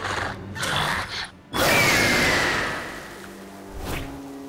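Cartoon sound effects over music. The first second and a half is a busy mechanical clatter. After a brief gap comes a sudden loud burst with a falling whistle, which fades away over the next second and a half.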